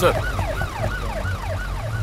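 Ambulance siren yelping, a rising-and-falling wail repeating about three times a second, over a low engine rumble.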